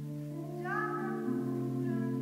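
A school choir singing held chords in several parts, the chord shifting about halfway through. A higher note slides up and falls away just over half a second in.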